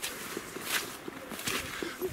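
Footsteps of a walker on a forest trail, with tall grass swishing against the legs, two louder swishes in the middle of the stride.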